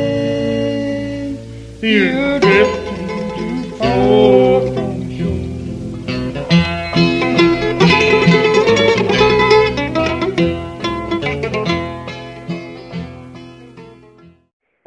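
Bluegrass band playing an old-time gospel song on acoustic string instruments, with wavering held notes, the music fading out near the end.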